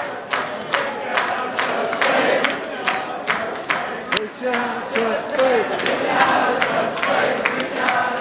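Concert crowd clapping in time, nearly three claps a second, with many voices singing and chanting along.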